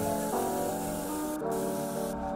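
Airbrush spraying paint: a steady hiss of air that breaks off briefly about a second and a half in, then resumes, over background music.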